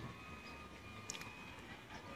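Faint background noise with a faint steady high tone and one light click about a second in.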